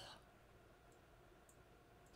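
Near silence: quiet room tone with two faint clicks about a second and a half in.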